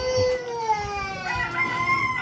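Roosters crowing: one long drawn-out crow that sinks slowly in pitch, followed a little over a second in by a second, higher crow.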